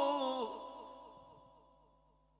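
A male Quran reciter's melodic chanting voice falls in pitch on the last note of a phrase and ends about half a second in. An echo effect follows, repeating the note and fading away over the next second and a half.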